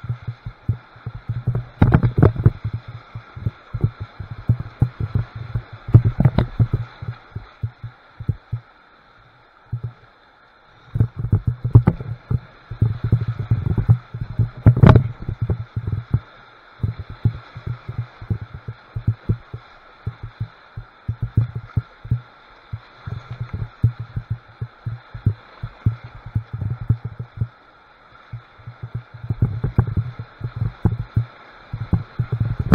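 Kayak running Class III whitewater rapids, recorded by a camera mounted on the boat: the rush and splash of the river comes through muffled, with irregular low thumps. The thumps are heaviest a couple of seconds in, about six seconds in and from about twelve to fifteen seconds in, with a brief lull near ten seconds.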